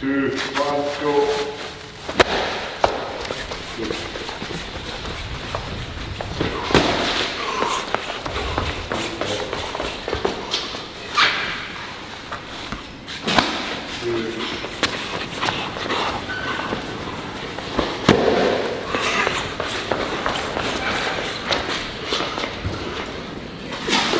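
Heavy strongman implements, a sandbag and a steel beer keg, being gripped, lifted and set down on a concrete floor, with about half a dozen sharp thuds spread through, in a large echoing warehouse. Shouted voices come and go over it.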